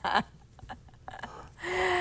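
A person's short breathy laugh, a second or so of quiet room tone, then a held vocal gasp at one steady pitch near the end.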